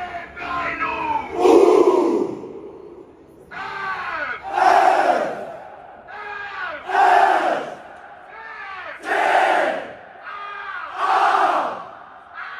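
Football supporters on a terrace shouting together in unison, five loud shouts about two seconds apart. Between the shouts a single lead voice calls out, and the crowd answers it in a call-and-response chant.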